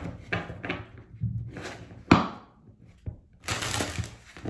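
A deck of tarot cards being shuffled and handled, with short papery rustles. There is one sharp knock of the deck on the table about halfway, then a quick dense riffle of cards near the end.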